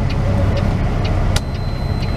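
Semi-truck diesel engine running, heard from inside the cab as a steady low drone, with one sharp click about a second and a half in.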